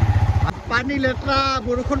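Motorcycle engine running at a steady, pulsing low beat while riding along, with a man's voice talking over it in the second half.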